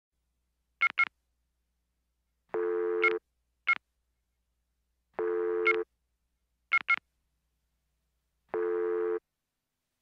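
Electronic beeps and tones: short high beeps, some single and some in quick pairs, alternating with three longer, lower buzzing tones of about half a second each, roughly every three seconds.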